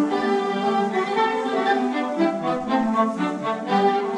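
Classical orchestral music led by bowed strings, with violins carrying a melody.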